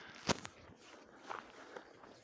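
Footsteps on snow-covered pavement, soft and irregular, with one sharp click about a third of a second in.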